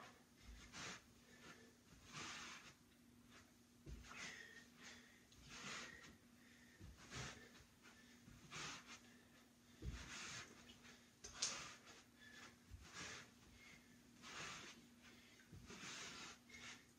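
Faint heavy breathing of a man exercising, a sharp exhale about every one and a half seconds as he side-steps and squats against a resistance band. A faint steady hum lies underneath.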